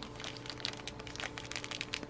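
Small clear plastic parts bags crinkling as they are handled, a quick irregular run of crackles.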